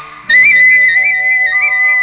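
Instrumental interlude of a Malayalam film song: a high flute melody with quick trilled ornaments over sustained chords, starting about a quarter second in after a brief lull.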